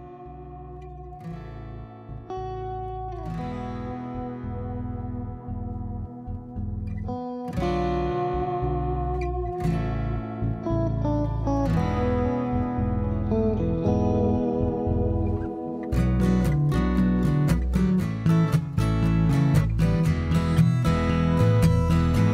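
Instrumental intro of a guitar-and-bass band: a picked guitar line ringing over sustained bass guitar notes, growing steadily louder. About three-quarters of the way in, a steady rhythmic strumming joins in.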